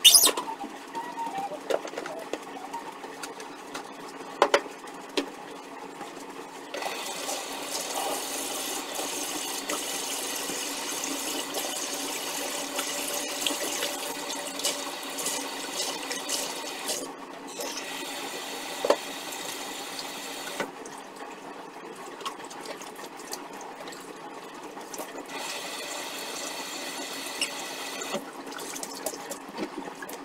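Kitchen sink tap running while dishes and glasses are washed by hand, turned on and off several times, with scattered clinks of glassware and dishes. A steady low hum runs underneath.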